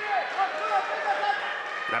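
A raised voice shouting a string of short calls in quick succession.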